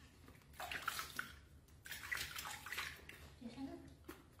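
Water splashing and sloshing in a plastic basin as hands wash a baby monkey, in two bursts, the second near the middle.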